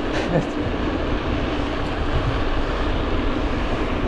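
Steady wind noise on the microphone with the hum of mountain-bike tyres rolling on asphalt, as the bike rides along at speed.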